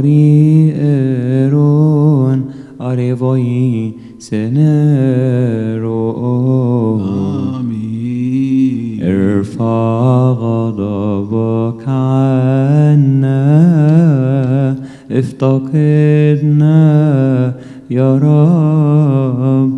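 A single male voice chanting a melismatic Coptic liturgical chant, with long, wavering, held notes and brief pauses for breath about four seconds in and near the end.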